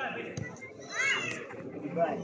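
A short shout from a player on the football pitch about a second in, over other voices in the background. Near the start there is a single dull knock of a football being kicked.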